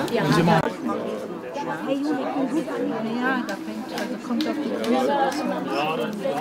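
Several people talking at once: an indistinct chatter of overlapping conversation.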